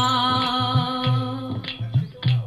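A man singing a Hindu devotional bhajan into a microphone, holding a long wavering note that fades out about one and a half seconds in. Under it runs a steady low drum beat of about three to four pulses a second.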